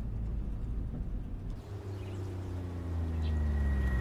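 Car engine running with a steady low hum; from about halfway through its pitch falls steadily as the car slows down.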